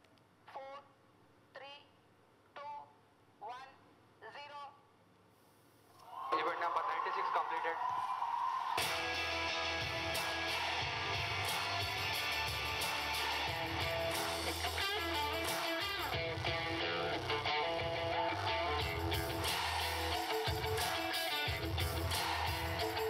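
A voice counts down, one number about every second, over the last seconds of a rocket launch countdown. About six seconds in, a sudden loud rush of sound comes at liftoff. From about nine seconds on, music with electric guitar and a driving, heavy beat fills the rest.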